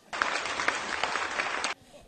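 Audience applauding, a dense patter of many hands that starts just after the beginning and cuts off suddenly about three quarters of the way through.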